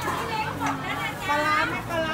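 Speech: people talking over one another, a woman's voice among them, with background chatter.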